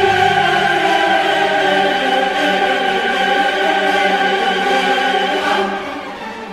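Classical choir and orchestra holding one loud sustained chord for about five seconds, then falling away near the end.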